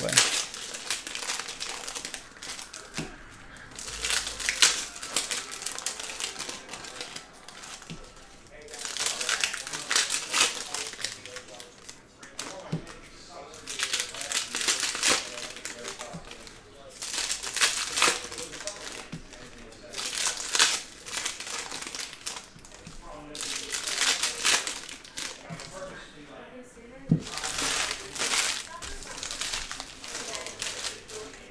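Trading-card pack wrappers of 2022-23 Panini Revolution basketball crinkling as they are torn open, with cards being handled, in bursts every few seconds.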